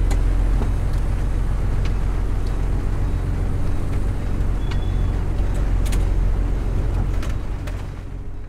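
Cab noise of an old pickup truck on the move: a steady low engine and road rumble with a few sharp clicks and rattles, starting to fade near the end.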